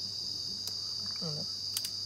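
Insects droning steadily at a high pitch, with a few faint clicks and a brief vocal sound just past a second in.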